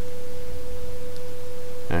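Steady electrical hum in the recording: a loud low drone with a constant mid-pitched whining tone above it, unchanging throughout.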